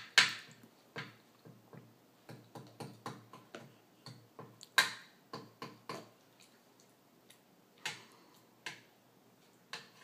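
Irregular light clicks and taps of a plastic spoon knocking and scraping in a plastic bowl, with a few louder knocks among many small ones.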